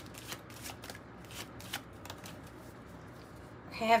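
A deck of oracle cards being shuffled by hand: a run of quick, irregular papery flicks and riffles, thinning out after about two seconds.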